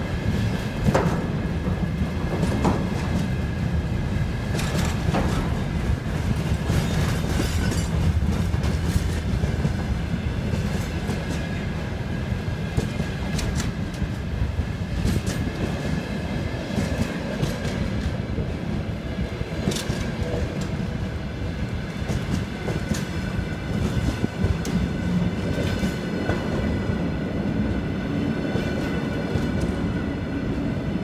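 Freight train of container flatcars rolling past at speed: a continuous low rumble with irregular wheel clacks over the rail joints and a faint steady high whine.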